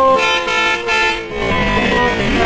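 Bus horn sounding a pulsing blast for about a second during a highway bus race.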